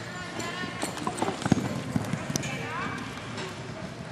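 A barrel racing horse's hooves galloping on arena dirt as it runs in, a cluster of hoofbeats that is loudest about a second and a half in. Voices are heard in the background.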